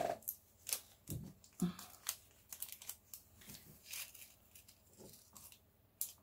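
Small clear plastic bead bag being handled and opened: an irregular run of crinkles and little clicks.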